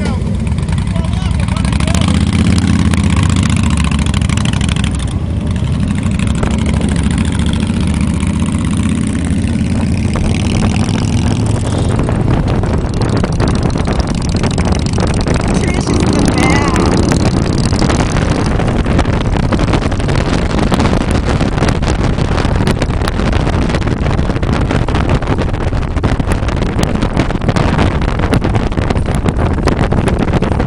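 Cruiser motorcycle engine running while riding along the road, with wind on the microphone. From about twelve seconds in, the wind noise takes over and the engine note is less distinct.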